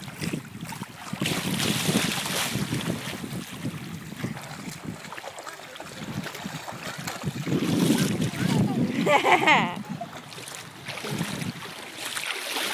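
Wind buffeting the microphone over lapping water and the splashing of a toddler wading through shallow water. A short, high-pitched voice comes about nine seconds in.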